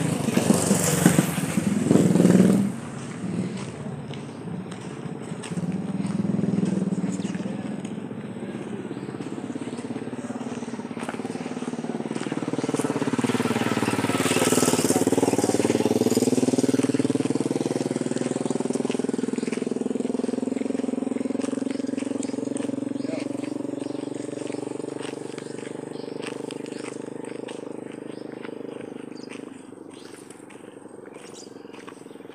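A motor vehicle's engine draws near, passes loudest about halfway through, then fades away slowly. Loud rustling and knocks come in the first couple of seconds.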